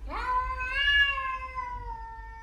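A domestic cat's single long, drawn-out meow. It rises quickly in pitch at the start, holds, then sinks slowly, and is loudest about a second in.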